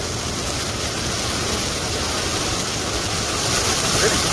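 Ground fountain firework (flower pot) spraying sparks with a steady rushing hiss, growing a little louder near the end.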